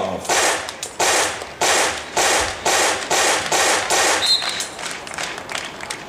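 Sharp rhythmic beats, about one every 0.6 seconds, that fade after about four seconds, then a short high referee's whistle blast signalling the serve.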